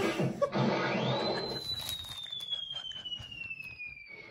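A single long, high whistle tone from a film soundtrack playing on a TV. It comes in about a second in and slowly falls in pitch, like a falling-object whistle effect.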